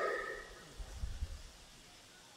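A man's amplified voice trailing off and echoing through a public-address system, then a pause with a few faint, short low sounds around a second in.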